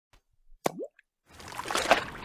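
A single short plop with a quick upward pitch glide, about two-thirds of a second in. After a brief silence, a wash of noise builds and is loudest near the end.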